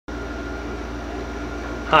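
Steady low electrical hum with a thin high-pitched tone above it, and a man's voice beginning right at the end.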